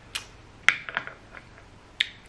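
Eating sounds: a few short lip smacks and mouth clicks while tasting a spoonful of ramen broth, four quick clicks in the first second and a half.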